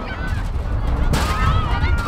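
Several voices shout drawn-out calls across a football pitch. A brief sharp noise comes about a second in, and wind rumbles steadily on the microphone.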